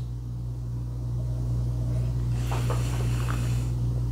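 A taster's breath after a sip of bourbon: one noisy rush of air about two and a half seconds in, over a steady low hum.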